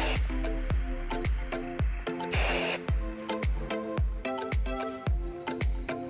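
Background music with a steady beat, over which an aerosol hairspray can gives a short hiss at the very start and a half-second spray about two and a half seconds in.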